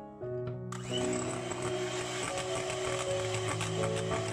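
Electric hand mixer switched on about a second in and running steadily, its twin beaters whisking an egg into creamed butter and sugar in a glass bowl, over background music.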